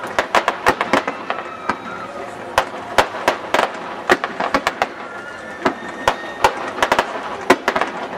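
Fireworks display: aerial shells bursting in a rapid, irregular series of sharp bangs and crackles.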